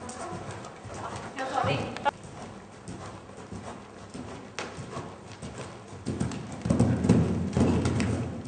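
Hoofbeats of a horse cantering on arena sand, coming as soft, irregular knocks that grow louder and denser near the end.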